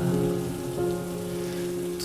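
Rain sound effect, a steady hiss of rain falling on a surface, mixed over the held chords of a slowed, reverb-heavy lofi song.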